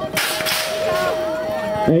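BMX electronic start gate sounding its long final tone while the gate drops, with a loud sharp slap about a fifth of a second in as the gate hits and the riders set off. Spectators call out over it.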